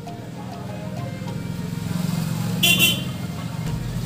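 A low hum that grows louder, with a short, high horn toot near three seconds in, over background music.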